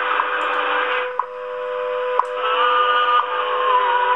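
WWV time signal on 5 MHz heard in AM through an RTL-SDR receiver: shortwave static with a steady tone and a short tick once a second. The static dips briefly about a second in as the RF gain is turned down. A whistle of interference comes in midway and slides down in pitch near the end.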